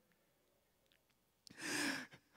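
Near silence, then about a second and a half in a small mouth click and a man's short, audible breath close to the microphone.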